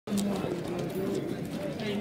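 Caged show pigeons cooing, low and steady, over a murmur of people's voices.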